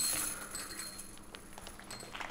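Disc striking the chains of a disc golf basket on a putt: a metallic jingle that rings and fades over the first second, with a few faint clinks after.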